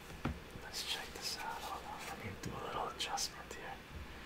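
A man whispering softly, with a short click just before the whispering begins.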